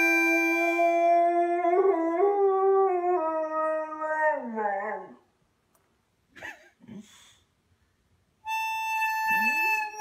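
A toddler blowing a harmonica while a boxer dog howls along. The howl wavers and then slides down in pitch, dying away about five seconds in. After a few seconds of near silence the harmonica starts again near the end, and the dog begins a new howl that rises in pitch.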